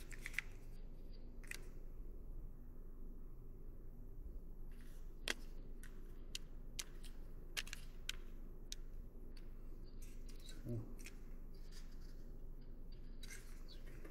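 Scattered light plastic clicks and taps, about a dozen over the stretch, from a Tagry X08 earbud charging case being handled: its lid worked and the earbuds lifted out and set back in.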